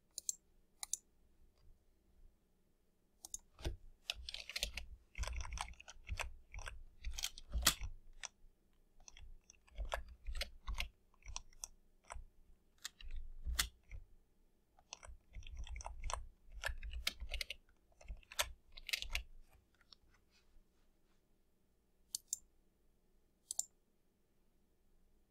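Computer keyboard keys and mouse clicks tapping in irregular runs of quick strokes with short pauses, sparse near the start and end and busiest through the middle.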